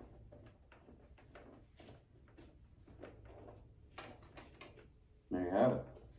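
Faint clicks, knocks and rubbing of a plastic Star Wars Black Series Stormtrooper helmet as it is pulled on over the head and adjusted by hand; it is a snug fit. Near the end there is a short, louder burst of a man's voice.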